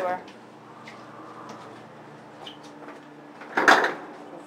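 Elevator doors shutting with a short, loud clatter about three and a half seconds in, over a low steady hum from the elevator; a brief voice sound at the very start.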